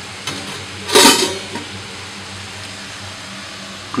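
Steady hiss of stovetop cooking, from beetroot sautéing in sunflower oil and a pot of broth simmering, with a short louder sound about a second in.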